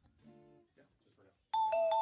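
Keyboard playing a short figure of bell-like notes, starting suddenly about one and a half seconds in.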